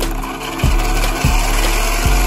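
Steady rasping, grinding whir of a vintage Radio Shack RC truck's spinning wheel and electric drivetrain, under background music with a thump about every 0.6 s.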